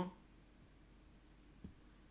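A single computer mouse click about one and a half seconds in, against quiet room tone.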